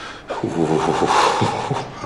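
A man's voice making a breathy vocal sound without clear words, lasting about a second and a half.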